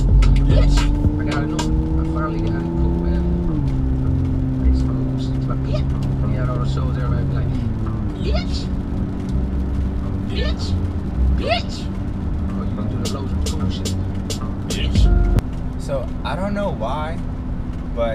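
Car engine and road noise heard from inside the cabin while driving: the engine's note climbs as the car accelerates, then drops suddenly as it shifts up, about 3.5 seconds in and again about 8 seconds in, before settling into a steady cruise.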